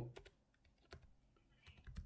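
Faint, irregular keystrokes on a computer keyboard, a few separate clicks as text is typed.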